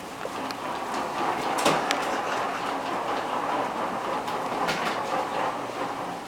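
Plastic wheels of a baby walker rolling across a wooden parquet floor: a steady rolling rattle with a couple of sharp knocks.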